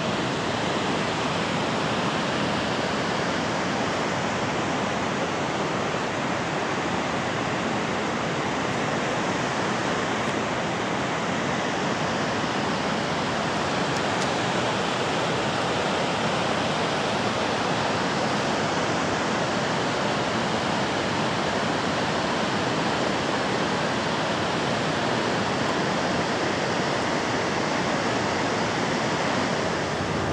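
Fast-flowing mountain stream rushing over rocks in white water: a steady, unbroken sound of running water.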